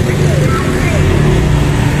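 Steady low rumble of motor traffic, with other people's voices faint in the background.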